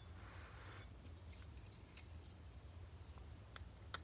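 Near silence: a low steady room hum, with a soft rustle in the first second and a few faint clicks.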